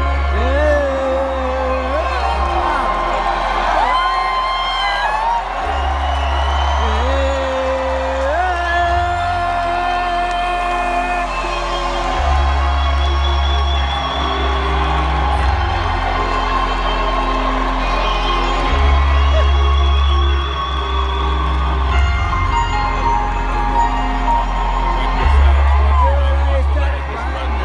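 Live reggae band heard from the floor of a large, reverberant arena: a sliding, held lead vocal melody over a deep bass note that returns every few seconds. Crowd whoops and cheers rise over the music.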